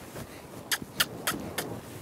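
Quiet hoofbeats and tack noise of two horses loping on arena dirt. In the second half there is a run of four sharp, crisp clicks about a third of a second apart.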